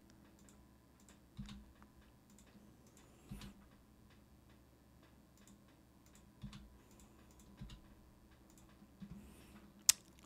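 Faint, scattered clicks of a computer mouse and keyboard keys being pressed while editing in Blender, with a few slightly louder knocks spaced irregularly over a low, steady hum.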